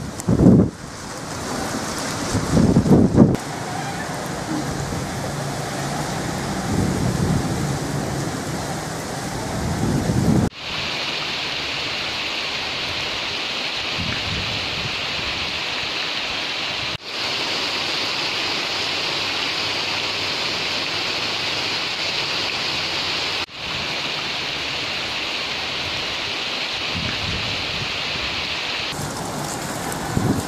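Heavy monsoon rain, a steady hiss, in several short takes joined by abrupt cuts. The first ten seconds also carry loud, gusty low rumbling from the storm.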